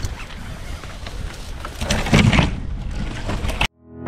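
Rumbling wind and movement noise on a helmet-mounted camera microphone as a tree climber gets underway, louder about two seconds in. The sound cuts off abruptly just before the end.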